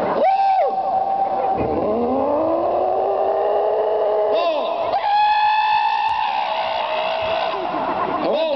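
Motorcycle engine revving: the pitch climbs steadily for a couple of seconds, then the engine is held at high revs for a few seconds, with crowd chatter underneath.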